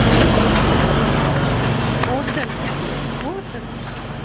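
Siemens ADVIA 2400 clinical chemistry analyser running: a steady low mechanical hum that slowly fades out.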